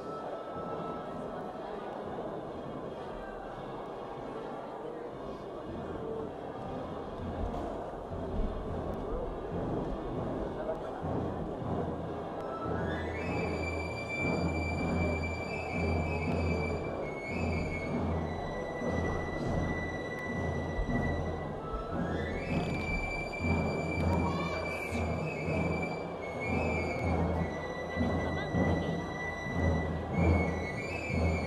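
Crowd chatter filling a large church, joined by a drum beating a steady pulse and then, about halfway through, a high pipe playing long held notes that slide up at the start of each phrase. This is pipe-and-tabor music of an arriving Rocío brotherhood.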